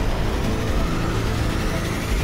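A deep steady rumble with a tone slowly rising over it: a cinematic swell in the dark opening score.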